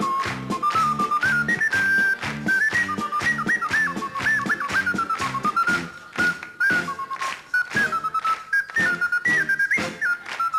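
A high, pure, whistle-like melody played on a small wind instrument cupped in the hands at the mouth, moving in quick steps and held notes, over a live band with drums and bass keeping a steady beat.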